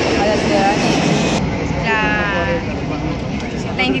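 Outdoor crowd ambience: background chatter of many voices over a steady noise, whose hiss drops away abruptly about a second and a half in. About two seconds in, a short wavering, pitched voice-like call stands out.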